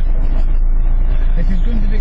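Off-road 4x4's engine running steadily as it drives over rough ground, heard from inside the cab as a loud, constant low drone.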